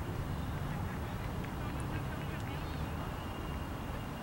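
Faint distant voices over a low, steady background rumble.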